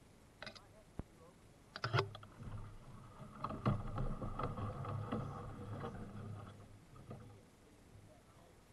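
Aluminium canoe hull knocking and scraping over rocks in a shallow creek: a few sharp knocks, then several seconds of grinding rumble with more knocks through it, fading out near the end.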